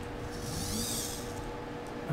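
Hobby servo motor in a robotic arm's fourth joint briefly whirring as it drives to a newly set pulse-width position, over a faint steady hum.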